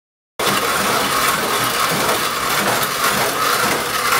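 Hand-cranked coffee grinder being turned: a loud, steady, dense rattling clatter that starts abruptly about half a second in.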